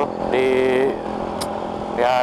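Honda Absolute Revo motorcycle running steadily at road speed, its engine hum mixed with wind on the helmet microphone. About half a second in, a held cry of one steady pitch lasts about half a second.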